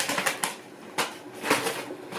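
A few short clicks and knocks at irregular intervals, from objects being handled close to the microphone.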